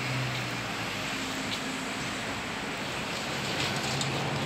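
Steady outdoor background noise with no distinct events standing out.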